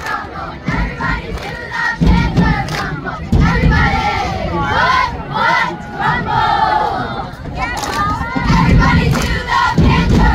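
A squad of young girls shouting a cheer in unison, their voices overlapping, with several low thuds mixed in.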